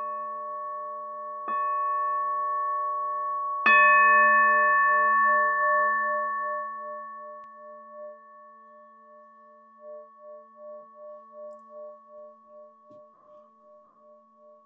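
Buddhist meditation bowl (standing bell) struck twice more after a first strike. The last strike, about four seconds in, is the loudest, and each strike rings with several steady pitches. The ring fades slowly with a pulsing, wavering hum.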